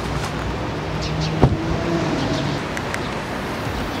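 A car door shut once with a solid thud about a second and a half in, over steady outdoor background noise.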